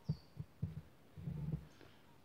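Soft low thumps of handling noise from the rifle-mounted camera as the gun is held and shifted: a few single knocks in the first second, then a longer low rumbling stretch around the middle.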